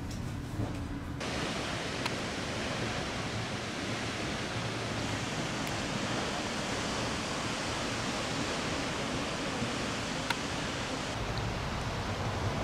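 Steady rushing roar of a waterfall, starting abruptly about a second in and changing shortly before the end.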